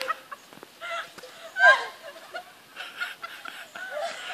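Chicken-like clucking calls, with one louder squawk that falls in pitch a little under two seconds in.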